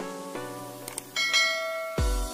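A faint click, then a bell chime that rings on for most of a second: the sound effect of a subscribe-button animation, over sustained background music.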